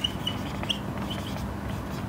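Whiteboard marker squeaking against the board as words are written: a handful of short, high squeaks in the first second and a half.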